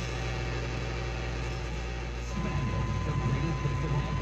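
FM tuner of a 1975 Fisher 432 receiver being tuned: steady hiss between stations over a low hum. About two seconds in, a station comes in with a broadcast voice and a steady high whistle.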